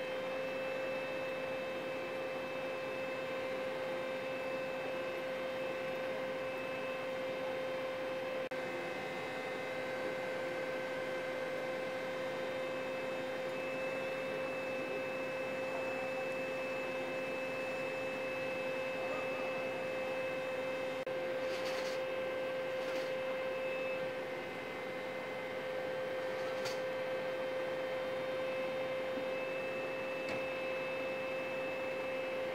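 A steady hum: one constant, unwavering high-pitched tone with fainter steady tones above it, with a few faint ticks late on.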